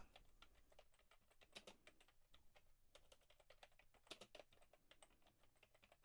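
Faint typing on a computer keyboard: scattered, irregular keystrokes as a name is typed into a text field.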